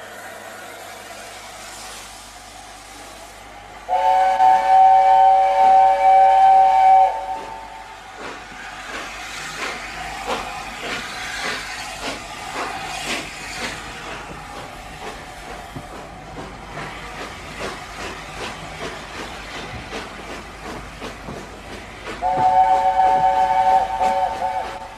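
LNER A4 Pacific steam locomotive sounding its three-note chime whistle twice: a loud blast of about three seconds some four seconds in, and again near the end. Between the blasts the engine runs with steam exhaust beats and wheel-and-rail noise, over a steady hiss of steam.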